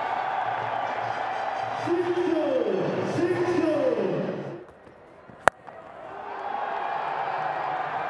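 Stadium crowd cheering after a six in a cricket match, with a few falling calls over the noise. The crowd sound cuts off about four and a half seconds in; a second later comes one sharp crack of a cricket bat striking the ball, and the crowd noise swells again.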